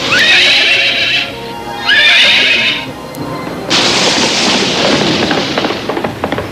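Cartoon horse whinnying twice, about two seconds apart, over background music. A steady rushing noise sets in a little past halfway.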